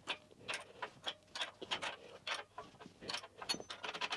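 Light metal clicks and ticks, irregularly spaced, about two or three a second, from a wrench working a bolt and lock nut on a steel power rack's frame.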